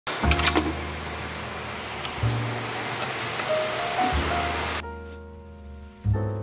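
Steam hissing out of a Sunhouse electric pressure cooker's release valve, loud and steady, cutting off suddenly near the end, with piano music underneath.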